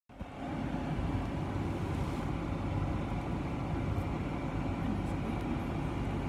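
Vehicle engine idling, a steady low hum, heard from inside the cab.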